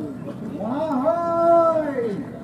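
Soldiers' haka-style war chant: male voices give one long, drawn-out shouted cry that rises at the start, holds a steady pitch, and falls away at the end.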